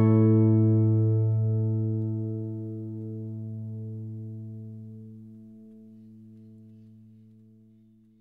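The final chord of a steel-string acoustic guitar, a The Fields OM-RC, left to ring out and slowly dying away over about eight seconds until it is almost gone.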